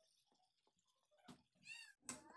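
Faint crackling of wheat poori frying in hot oil, then near the end a short high-pitched call with a bending pitch.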